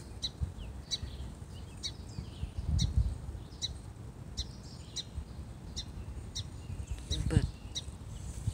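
A small bird chirping repeatedly, short high chirps coming about once or twice a second, over a low rumble on the microphone.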